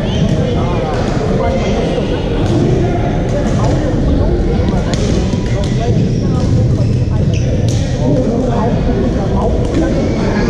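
Badminton rackets striking a shuttlecock in several sharp hits, over the steady echoing din and voices of a busy sports hall full of courts in play.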